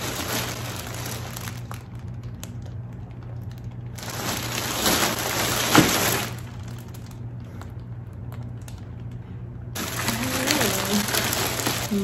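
A large plastic mailer bag crinkling and rustling as it is handled, in three bursts with quieter gaps between. The loudest crackle comes about six seconds in.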